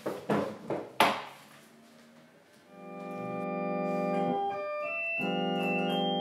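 A few knocks and a clunk from handling the lid of a portable electronic organ, then the organ sounding long held chords that fade in about two and a half seconds in, with a short break and a change of chord past the middle.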